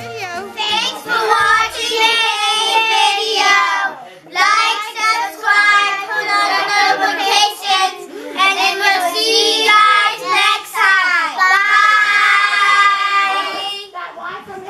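A group of children singing together in unison, in several phrases with short breaks between them.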